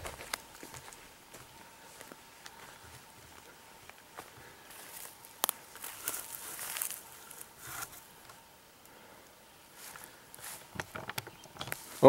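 Footsteps through grass and over bare raked ground: soft, irregular scuffs and rustles, with a few louder crunches in the middle.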